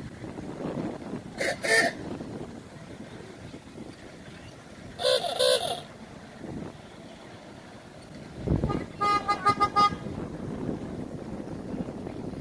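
Golf cart horns beeping: two short beeps about a second and a half in, a few more about five seconds in, and a quick run of about half a dozen short beeps just after a dull thump near nine seconds, over a low outdoor rumble.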